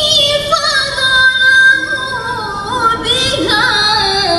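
A woman's melodic Qur'an recitation (tilawah) sung into a microphone. She holds long, ornamented notes with fast wavering turns, and the melodic line slides downward in pitch, with a quick trill near the end.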